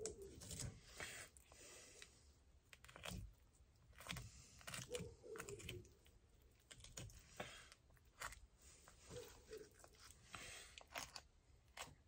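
Faint, scattered crunching and scraping of a fish knife cutting a fillet off a small panfish on a wooden board, in short separate strokes.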